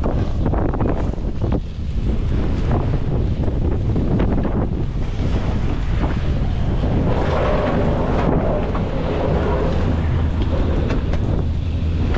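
Strong wind buffeting the microphone in a steady low rumble, with a few knocks as the chairlift's metal safety bar is raised early on.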